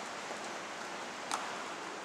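Steady hiss of room tone in a large, quiet church, with one short click about one and a half seconds in.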